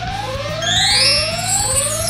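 Synthesized sound-effect music: a short rising synth tone repeats about every half-second, and a brighter rising sweep comes in about halfway through.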